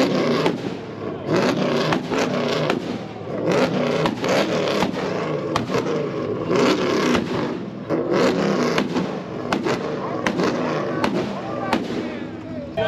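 High-performance car engine held on a two-step launch rev limiter, its exhaust cracking and banging in irregular rapid pops over the droning engine.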